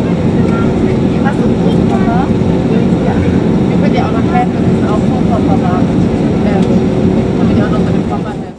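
Airliner cabin noise while taxiing: a loud, steady hum of the jet engines and air system with a steady tone running through it, and voices talking over it.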